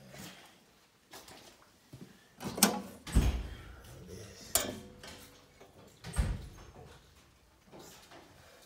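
Steel door of a General Electric load center (breaker panel) being handled and swung open: a few sharp metallic clicks and clunks, with two heavier low thumps about three and six seconds in.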